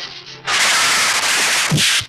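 Water splashing loudly as men fall into a round cement water tank, a rushing noise for about a second and a half, with a thud near the end.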